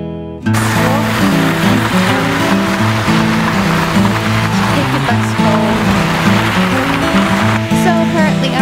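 Background music continues, and about half a second in a loud, steady rushing noise of outdoor ambience comes in over it.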